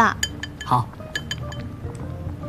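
Utensils clinking against ceramic bowls and dishes at a hot pot table: a series of light clinks, each with a short ring, mostly in the first second and a half.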